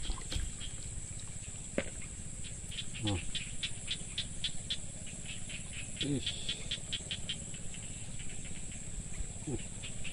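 Insects calling outdoors: a steady high-pitched drone, joined from about two and a half to seven seconds in by a fast run of chirps at around five a second. A low steady rush lies underneath.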